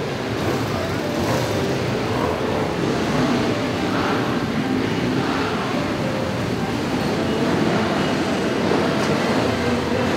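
Many motorcycles riding slowly past in a column, their engines running together at low revs in a steady mix of engine sound.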